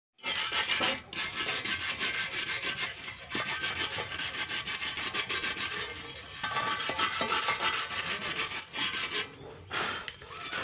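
Steel wire brush scrubbed rapidly back and forth over a fresh stick weld on a steel pipe, a scratchy rasp of several even strokes a second with brief breaks, stopping about nine seconds in. The brushing cleans slag off the 6013 weld bead.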